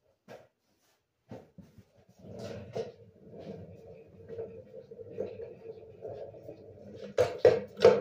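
Handling noise of hand tools and parts: a few scattered clicks, then a low steady hum from about two seconds in, and three sharp knocks close together near the end, the loudest sounds.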